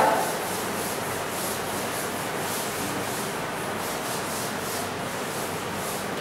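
A chalkboard being wiped clean with a blackboard duster: a steady rubbing scrape in repeated back-and-forth strokes.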